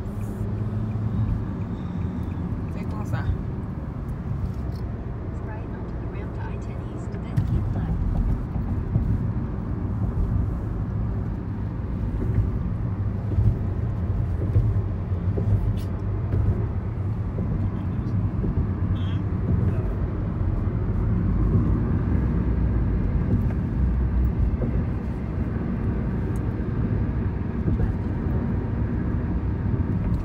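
Steady low rumble of road and engine noise heard from inside the cabin of a car driving at highway speed, growing a little louder about seven seconds in.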